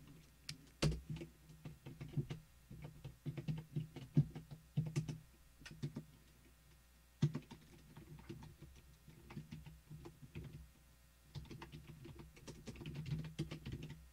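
Typing on a computer keyboard: bursts of quick keystrokes with short pauses between them and a single louder key stroke about seven seconds in.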